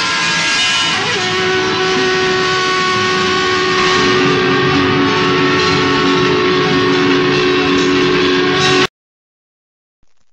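Loud sustained horn-like tones at several pitches held together over a noisy wash, with a new lower note entering about a second in; the whole sound cuts off abruptly near the end.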